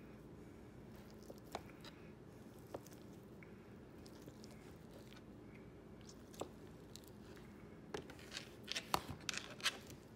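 Knife cutting through a block of feta and tapping on a plastic cutting board: a few scattered clicks, then a quicker run of taps near the end.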